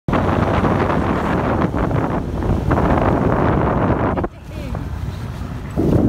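Wind buffeting the microphone, with water rushing past a small motor dinghy under way. The noise drops away suddenly about four seconds in and comes back loud just before the end.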